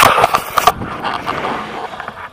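Loud rustling and knocking of clothing and harness fabric brushing against the camera's microphone, mixed with wind buffeting, as a tandem paraglider lifts off from snow. The clatter stops about two-thirds of a second in, leaving a steadier wind rush that slowly fades.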